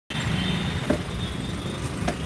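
Steady low background rumble with a thin, steady high-pitched whine and a single short click just under a second in.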